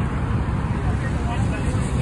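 Street noise: a steady low rumble with indistinct voices in the background.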